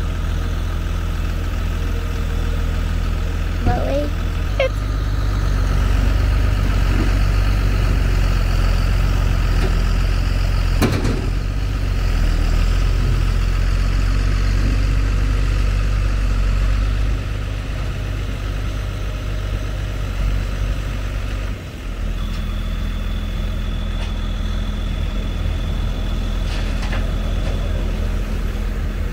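Tractor and pickup engines running steadily under load as the stuck service truck is towed out on a chain. The drone gets louder a few seconds in and eases off past the middle, with one sharp knock about 11 seconds in.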